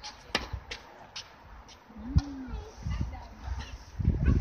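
A tennis racket strikes the ball with one sharp pop about a third of a second in. Several fainter knocks follow over the next two seconds.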